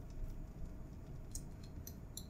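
Faint computer mouse clicks over low hiss, with two light clicks in the second half, as the mouse works the eraser tool.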